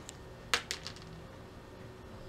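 Plastic multimeter test-lead probes clicking as they are handled: one sharp click about half a second in, then a few lighter clicks close after it.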